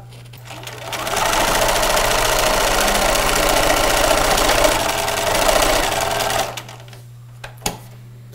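Electric sewing machine stitching a seam through layered fabric. It winds up to speed in the first second, runs steadily, and stops about six and a half seconds in.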